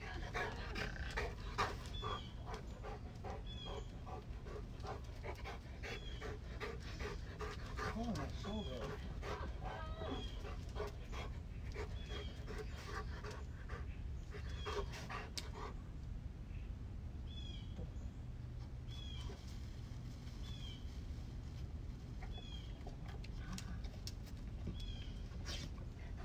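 A dog panting, in quick steady breaths.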